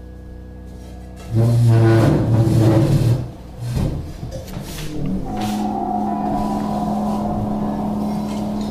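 A sudden loud, low rumbling noise that breaks off, comes back briefly, and then settles into a steady low drone with a higher tone held above it.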